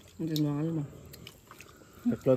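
One short spoken syllable, then a quiet stretch with a few faint clicks.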